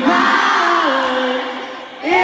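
Live pop singing: a melody in long held notes that step down in pitch, fading near the end.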